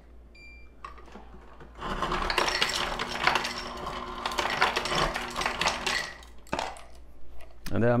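Ice cubes clattering into a glass for about four seconds, over a steady hum. A short high beep sounds just before.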